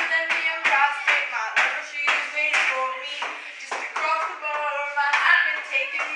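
A girl's voice singing with a quick, steady run of sharp hand claps, echoing in a small restroom.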